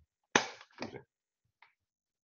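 A man's single sharp cough, followed by a brief muttered word. He is sick.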